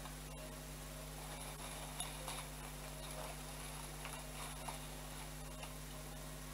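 A few faint, light clicks and taps as artificial flower stems are pushed and adjusted in a vase, over a steady low hum.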